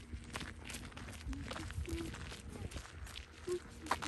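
Footsteps on a packed dirt-and-gravel walking trail, a walker's steady pace of short scuffing steps.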